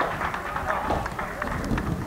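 Voices calling out across an outdoor football pitch, with a few soft knocks and a low rumble underneath.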